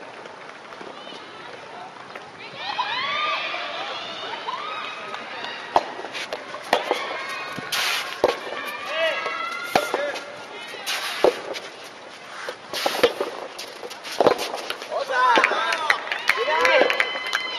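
Soft tennis rally: the soft rubber ball is struck by rackets and bounces on the court, giving sharp pops roughly a second apart from about six seconds in. Voices call out over it.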